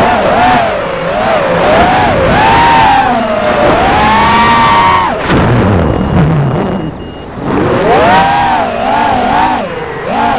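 Racing quadcopter's brushless motors (2506-size, 3000 kV, on 6-inch props) whining hard, their pitch swinging up and down with the throttle. A long high whine about four seconds in cuts off suddenly at about five seconds as the throttle drops, and the whine climbs back near eight seconds.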